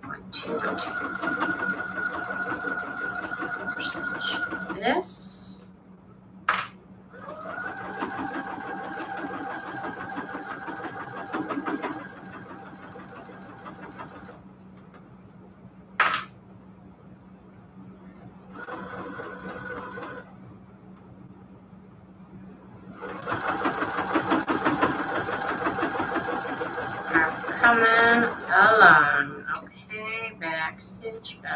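Baby Lock Jubilant computerized sewing machine stitching in several runs: about five seconds from the start, another five-second run from about 7 s, a short burst near 19 s and a longer run from about 23 s, with pauses between. A single sharp click comes about 16 seconds in.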